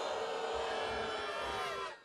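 Large rally crowd's sustained vocal reaction, many voices held together in a steady din that cuts off just before the end.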